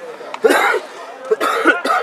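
A person close to the microphone coughing: one loud cough about half a second in, then a quicker run of short coughs near the end.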